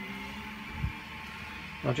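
Quiet room tone with a steady low electrical hum, a soft knock about a second in, and a man's voice starting just before the end.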